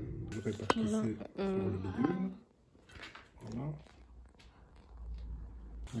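Mostly speech: a voice talking in French, with a single sharp click just under a second in and quieter gaps between phrases.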